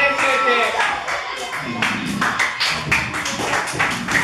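Audience applauding, with many hands clapping. A few voices can be heard over the clapping near the start.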